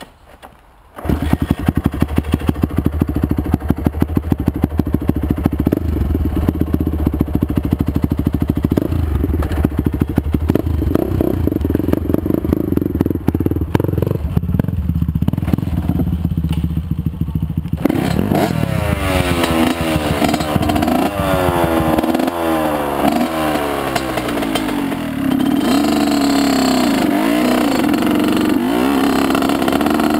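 Honda CR85 big-wheel's 85cc two-stroke single catching about a second in and running with a rapid crackling idle, blipped now and then. From about 18 seconds the revs climb and fall repeatedly as the bike pulls away, then hold steadier and higher while riding.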